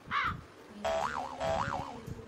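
A crow caws once. About a second in, a cartoon 'boing' sound effect plays twice back to back, each a held springy tone that then wobbles up and down in pitch.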